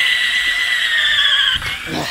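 Cordless drill boring through a thin metal antenna mast: the bit cutting the metal gives a steady, high-pitched whine that sags slightly in pitch and then stops about one and a half seconds in as the bit breaks through.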